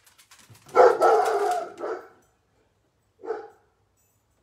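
Small dog barking: one long, drawn-out bark starting about a second in, then a short second bark near the end.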